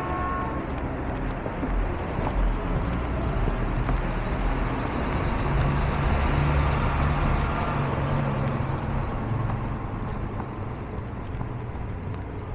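Street traffic: cars and heavier vehicles passing close by with a steady engine hum, growing loudest about halfway through and easing off toward the end.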